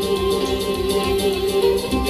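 Folk music on a plucked string instrument: a picked melody over steady held low notes.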